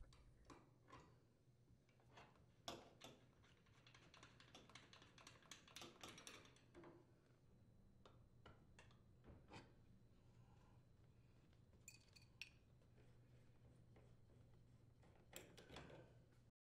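Near silence with faint, scattered metallic clicks and taps: an adjustable wrench and a 9/16-inch wrench working the brass nuts that hold the gas supply tubes to an oven gas safety valve, loosening them.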